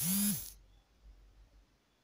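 A woman's voice finishing a word, then a pause of quiet room tone with a faint low hum.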